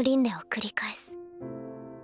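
A woman speaking a line in Japanese over soft background music of held keyboard chords; her voice stops about a second in and the chords carry on alone.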